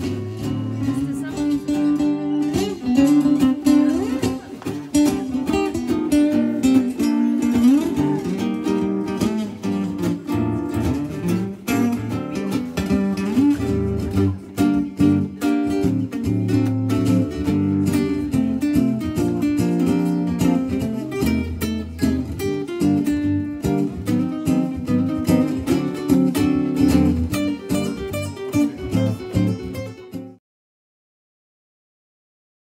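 Two guitars playing an instrumental piece together, a nylon-string acoustic guitar plucking melody and chords over a lower bass line.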